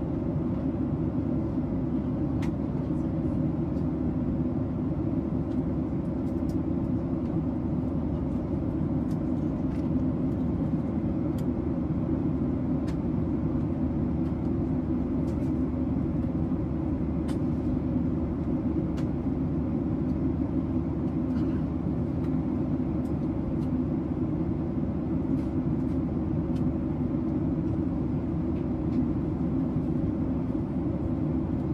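Steady low rumble inside an airliner's cabin in flight: jet engine and airflow noise, unchanging throughout, with a few faint clicks.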